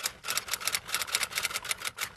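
A rapid, fairly even series of sharp clicking taps, about seven a second.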